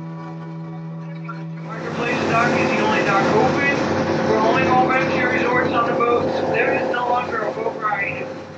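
Ferry boat running across the water: a steady noise of engine, water and wind starts up about two seconds in, with the captain's spoken commentary over it. Before that, a steady held music chord.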